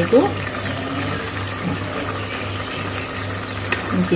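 A steel ladle stirring pieces of boti (tripe) in broth in an aluminium pot, over a steady low hum, with one sharp click near the end.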